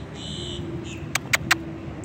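Three sharp clicks in quick succession a little past halfway, over a low steady hum and faint outdoor background.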